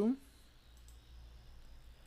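Faint computer mouse clicks less than a second in, following the tail end of a spoken word.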